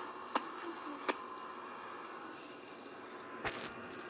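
Quiet room tone: a faint steady hiss and hum, broken by a few light clicks.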